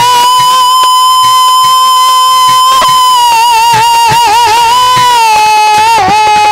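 Indian devotional folk music (jawabi kirtan): a singer holds one long high note for about five seconds, wavering in vibrato in its second half, over harmonium and light dholak taps.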